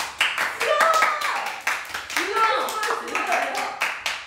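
Two people clapping their hands in fast, repeated claps, with voices over the clapping.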